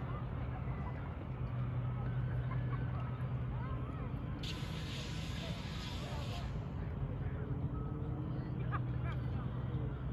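A steady low motor hum, with a two-second burst of hiss about four and a half seconds in.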